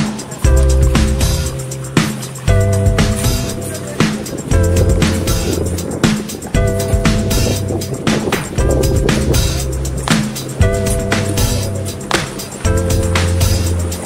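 Background music with a steady beat, its bass and chords changing about every two seconds.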